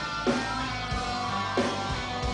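Live rock band playing: electric guitar over drums keeping a steady beat, about three beats every two seconds.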